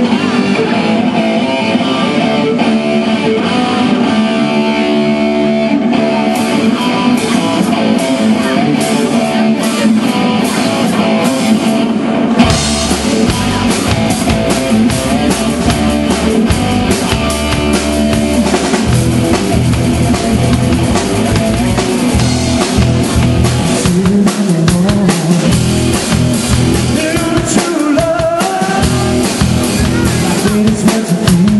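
A live rock band playing a song's opening: sparser at first, with the full band and its low bass coming in about twelve seconds in, electric guitar and drum kit throughout.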